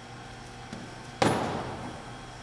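A single sharp metal-on-metal clank with a short ring, a little over a second in: the fork end of a Halligan bar striking a carriage bolt on the door.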